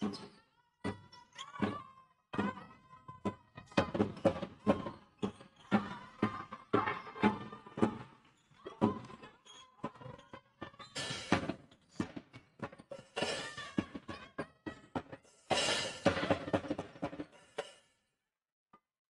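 A basketball game on a hall court: the ball thuds repeatedly on the floor, with many short knocks, over music playing in the hall. There are louder, brighter stretches of noise around the middle and near the end.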